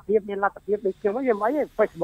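Speech only: a voice talking in Khmer into a studio microphone.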